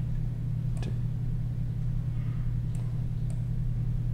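A steady low hum in the background of a desktop screen recording, with a few faint clicks from working the computer mouse.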